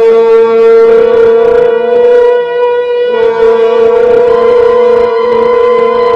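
Soundtrack music: a single wind-instrument note held throughout, with a slight shift in pitch about three seconds in.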